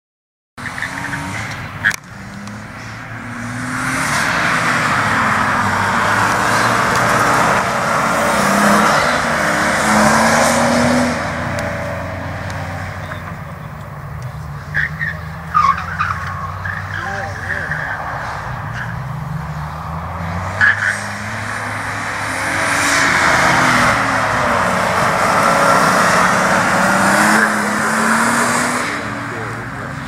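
Nissan R32 Skyline engine revving hard and dropping repeatedly through an autocross run, with tyres squealing. The sound swells twice as the car comes close and fades in between.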